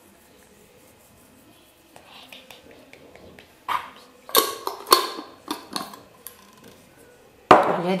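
A spice container of dried oregano being shaken and tapped over chicken slices on a plate: faint rattling, then a run of sharp taps and knocks about every half second from about halfway through.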